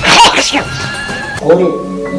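A loud cry lasting about half a second with falling pitch, over background music, followed near the end by a short spoken exclamation.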